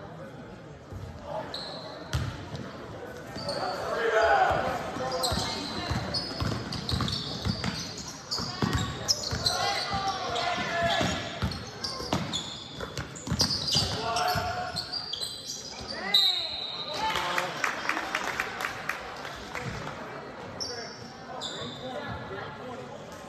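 Basketball game in a large gym: a ball bouncing on the hardwood court, with shouting voices from players and spectators echoing in the hall.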